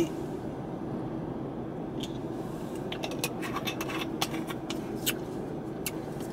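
Steady low hum inside a parked car's cabin, with a faint even tone running through it. From about two seconds in, a scattering of small, sharp clicks and taps.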